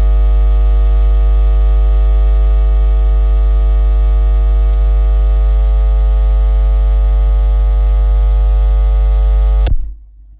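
A loud, steady electrical hum, deep and buzzy with many overtones, that cuts off suddenly near the end.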